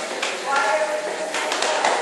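Voices talking and laughing in the background, with a few sharp taps about a quarter second in and again past the middle.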